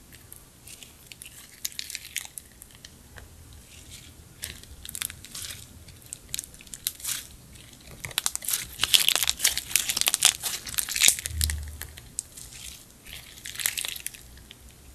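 Clear slime loaded with pink glitter being stretched, folded and squeezed by hand: sticky crackling and popping, busiest from about eight to eleven seconds in, with a soft thump near eleven seconds.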